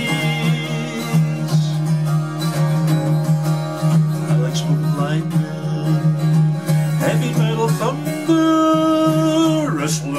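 Eko 12-string acoustic guitar strummed steadily, tuned down a half step, under a man's singing voice, with a long held sung note near the end.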